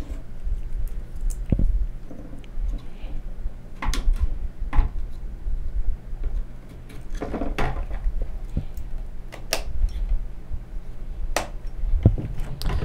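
G.Skill Ripjaws DDR3 RAM sticks being pushed into the MSI Z68A-GD80 motherboard's memory slots: scattered sharp plastic clicks and knocks as the modules seat and snap into place, over a low steady hum.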